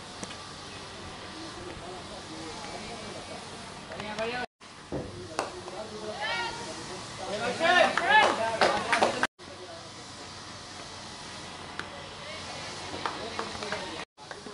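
Cricket players' voices shouting and calling on the field, a loud burst of several overlapping voices with a few sharp claps between about five and nine seconds in. Before and after it there is a steady open-air hiss, broken by two brief dead-silent gaps.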